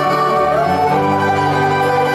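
A live Greek band plays an instrumental passage of held, shifting melodic notes, with a bouzouki being plucked and an accordion among the instruments.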